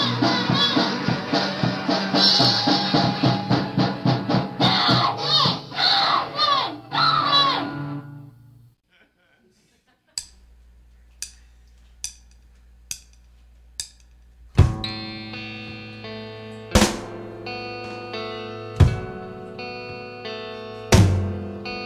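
Recorded rock band music: a dense song with drums, guitar and a voice ends about 8 seconds in, followed by a brief silence. The next track opens with evenly spaced clicks, about one a second, over a low hum, then the full band comes in with sustained guitar chords and heavy drum hits about every two seconds.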